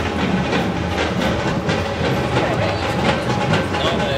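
Busy outdoor street ambience: a steady wash of background noise with indistinct crowd voices and irregular clattering knocks.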